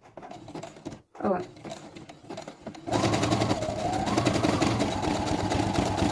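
Domestic sewing machine fitted with a button-sewing foot, running at a steady, fast rhythm for about three seconds, starting about halfway through, as it zigzags back and forth in place through the button's holes to sew the button on.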